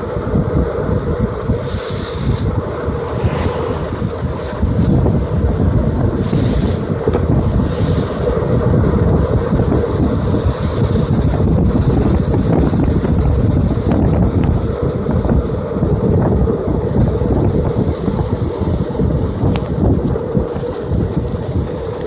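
Longboard wheels rolling fast down an asphalt road, a steady loud rumble, from a Kebbek hairpin board on Paris trucks. Wind buffets the phone's microphone, with gusts coming and going.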